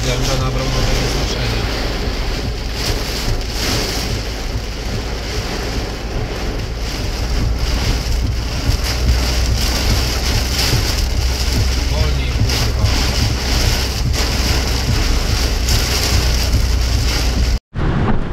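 Heavy rain drumming on a moving car's roof and windscreen, over the steady low rumble of the car driving, heard from inside the cabin. The sound cuts out briefly just before the end.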